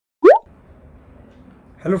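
A single quick, loud, rising 'bloop' sound effect at the very start, then faint steady background hiss until a man's voice begins near the end.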